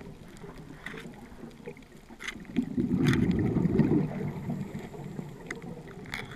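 Underwater recording: a scuba diver's exhaled bubbles gurgling out of the regulator in one loud burst of about a second and a half midway, over a faint hiss with a few scattered sharp clicks.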